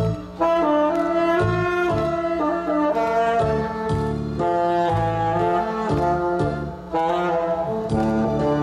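Tenor saxophone playing a melody of held notes over a recorded backing track with a steady bass beat, amplified through PA speakers, with two short breaks between phrases.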